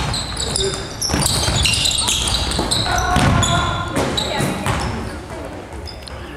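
Basketball game on a hardwood gym floor: sneakers squeaking in short, repeated chirps, the ball bouncing and feet thudding as players run, with a few voices calling out.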